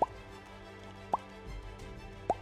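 Two short, rising 'bloop' pop sound effects about a second apart, of the kind that accompanies animated dots popping onto the screen, over soft background music.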